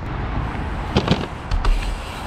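A dirt jump bike riding at a portable kicker ramp: a couple of sharp knocks about a second in, then a heavy low thump shortly after, over a steady low rumble.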